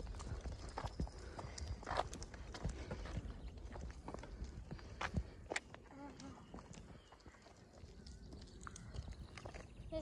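Footsteps on a tarmac path, heard as scattered light taps, with a low wind rumble on the microphone.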